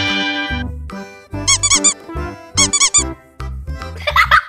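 Background music with a steady bass line, over which come two quick runs of about four squeaky chirps each, a little over a second apart.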